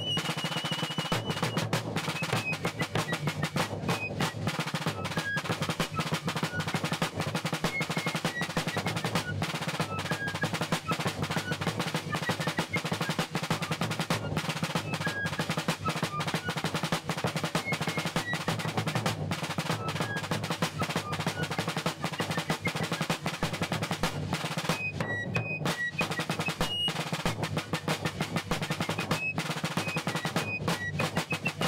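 Snare drum playing a continuous military march cadence with rolls, a dense steady stream of strokes, with scattered short high notes above it.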